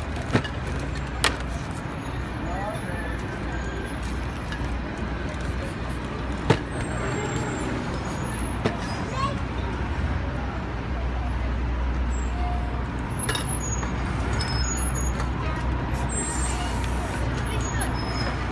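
Street traffic rumbling steadily, with voices in the background and a few sharp knocks from spray cans and metal lids being handled and set down on the painting table.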